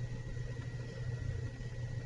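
Steady low hum with a faint, thin high whine above it: the recording's background noise during a pause in narration.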